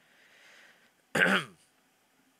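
A man clears his throat once, a short, loud rasp about a second in.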